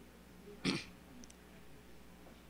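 A single short cough from a person, once, about two-thirds of a second in, in an otherwise quiet room.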